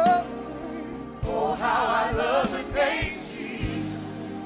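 Gospel church music: a choir singing, the voices wavering, over steady held chords, with a few low beats.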